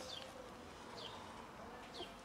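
Faint outdoor ambience: a small bird gives short falling chirps about once a second over a faint wavering insect buzz.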